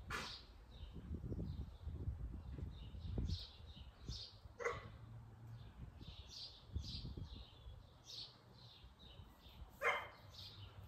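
A dog barking: three single barks a few seconds apart, over birds chirping.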